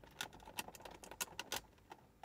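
Hands working a drain tube loose from its fitting on a plastic reservoir tub: a string of faint, short clicks and taps that stops about a second and a half in.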